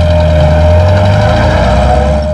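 A car engine running with a steady low rumble as an old black sedan pulls away, with a single high tone held over it.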